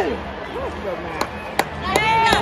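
Faint voices over a steady background hubbub, with three sharp knocks or claps in the second half, a little under half a second apart.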